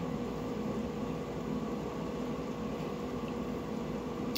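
Kitchen range hood fan running: a steady hum with a faint even hiss.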